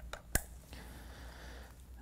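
A single sharp plastic click from handling a handheld LAN cable tester and its RJ45 patch cord, with a faint tick just before it and quiet rustling afterwards.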